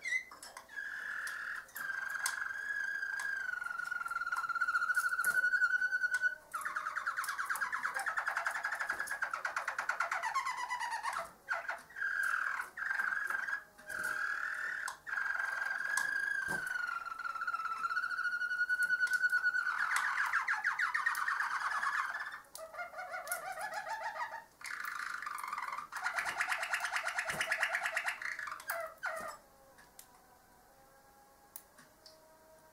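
Harzer Roller canary singing: a long, near-continuous song of rolled trills and drawn-out notes that slide slowly in pitch, broken by a few short pauses.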